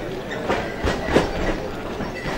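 A few thuds and scuffs of wrestlers' feet and bodies on the wrestling mat as they grapple in a standing clinch, the loudest a little past the middle, over the general noise of the hall.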